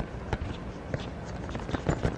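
Camera handling noise while a fogged lens is wiped with dress fabric: irregular small knocks and clicks over a low rubbing rumble on the microphone.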